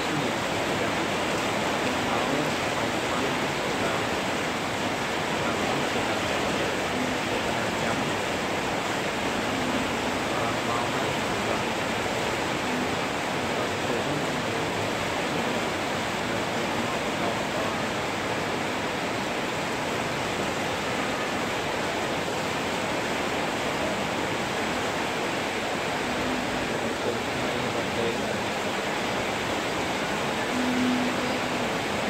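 Heavy rain falling hard and steadily, an even hiss that does not change.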